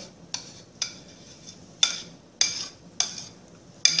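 A spoon clinking against a dish about six times, with faint scraping between the clinks, as thick, sticky sweet potato batter is scooped and worked by hand.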